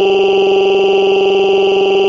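A synthetic text-to-speech cartoon voice holding one long vowel at a single flat, unchanging pitch, with a buzzing quality.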